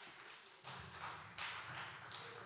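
Faint room sound as a live microphone feed cuts in out of silence, with soft taps about every three-quarters of a second.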